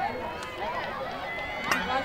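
Indistinct overlapping voices of players and spectators calling and chatting across an open field, with one sharp click near the end.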